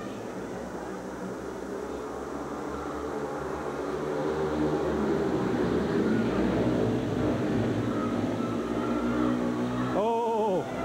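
Speedway bikes' single-cylinder engines racing in a heat, growing louder over the first five seconds as the bikes come near and staying loud as they pass close.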